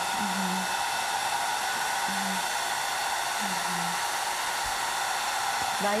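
Handheld hair dryer blowing steadily at constant strength, drying a glued decoupage plate.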